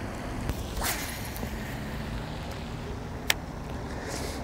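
Steady wind noise on the microphone, with a brief swish about a second in and a single sharp click near the end.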